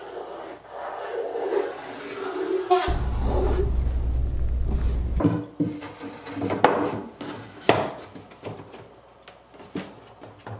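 Pine boards being handled and set into a wooden cabinet back: wood rubbing and sliding on wood, then a run of short knocks and taps as the boards are laid in place.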